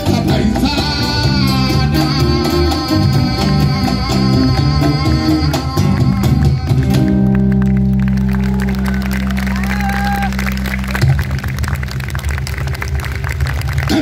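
Live Afro-Peruvian band playing a tondero instrumental passage: guitars over a steady percussion beat, with long held notes in the first half and a sustained low note after it.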